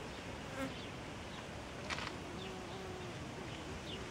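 A flying insect buzzing nearby, a low wavering hum that is clearest in the second half. A brief sharp sound comes about two seconds in, and a few faint high chirps are heard.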